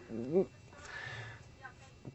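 A short voiced syllable from a man in the first half-second, then a pause with only faint room tone.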